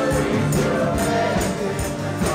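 Live gospel music: a group of voices singing together over an amplified band, with tambourines struck and shaken on a steady beat about twice a second.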